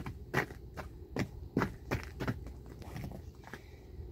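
Footsteps crunching in crusty snow: a series of short, sharp crunches, about two a second.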